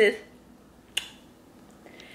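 A single short, sharp click about a second in, like a smack or snap, against low room tone.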